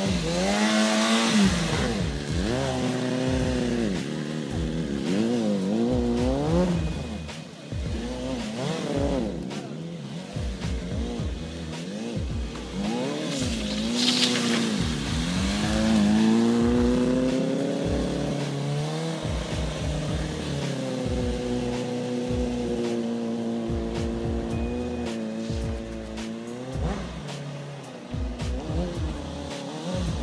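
Small stunt motorcycle's engine revving up and down during wheelies and tight circles, its pitch rising and falling every second or two. About halfway there is a brief tire squeal.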